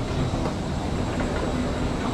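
Steady rumbling noise with a faint low hum at an airliner's boarding door, the ambient sound of the aircraft and jet bridge.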